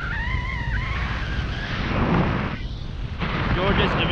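Wind buffeting the microphone of a camera held out in flight under a tandem paraglider, a steady low rumble.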